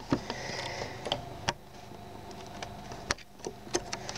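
Plastic LEGO pieces being handled, giving a string of separate light clicks and knocks, about six in four seconds.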